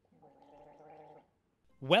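A man gargling a mouthful of liquid with his head tilted back: a faint, steady, warbling gargle about a second long. Loud speech begins just before the end.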